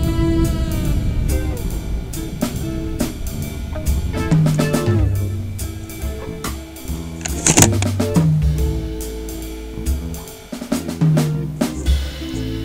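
Jazz background music driven by a drum kit with snare and bass drum over a bass line, with one louder crash about halfway through.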